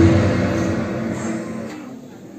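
A church choir's final sung chord cutting off, then fading away over about two seconds in the echo of a large hall.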